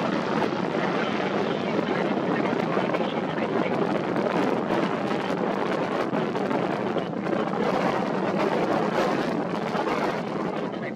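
Strong gusty wind buffeting the microphone: a loud, steady rushing that flutters constantly.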